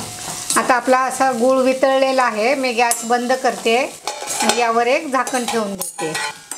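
Metal spatula stirring and scraping jaggery-coated bitter gourd pieces around a black kadhai, the scraping squealing in shifting pitches over a light sizzle of the frying.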